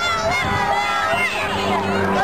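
Many young children's voices calling out at once, overlapping one another.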